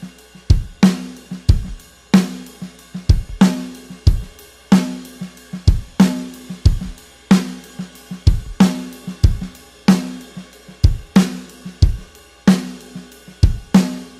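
Drum kit playing a steady 16th-note groove: accented snare backbeats and bass drum, with the left hand's offbeat 16ths played as quiet ghost notes on the snare. The pattern repeats evenly throughout.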